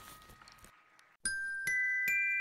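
The last chord of a school concert band dies away into about half a second of silence. Then bell-like struck notes from a mallet percussion instrument begin, two ringing notes near the end, each held on.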